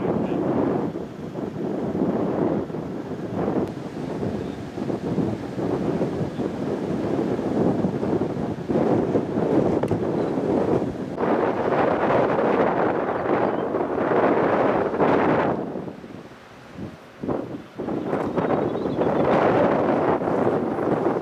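Wind buffeting the microphone in gusts, easing off for a moment near the end before picking up again.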